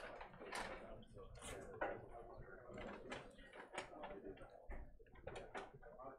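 Faint background talk in a small room, with scattered clicks and knocks from equipment being handled at a lectern.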